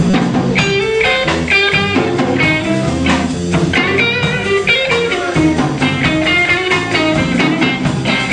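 Blues band jamming live, with a guitar leading in runs of short, quickly changing notes over sustained bass notes.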